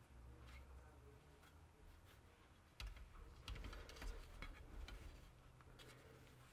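Wooden rigid heddle loom being worked during plain weave: a quiet stretch, then about three seconds in a two-second run of soft clicks and light knocks.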